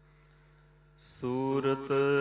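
Sung Gurbani hymn. It is nearly quiet for the first second, with only a faint held tone, then a singer comes back in loudly on a long held note.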